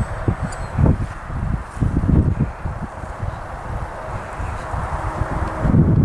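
Wind buffeting the microphone: an uneven, gusty low rumble.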